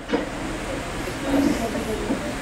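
Steady room hiss with faint, indistinct voices of a seated group murmuring.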